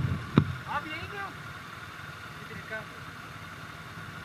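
Yamaha YBR-G single-cylinder motorcycle engine idling steadily while stopped, with two sharp knocks right at the start and faint voices in the background.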